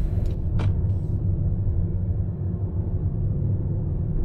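Steady low rumble of a car's engine and tyres heard from inside the cabin while driving, with a short click about half a second in.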